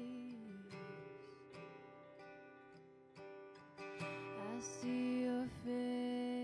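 A live worship band playing a slow song: women singing held notes over strummed acoustic guitar with electric guitar, quieter in the middle and swelling again about four seconds in.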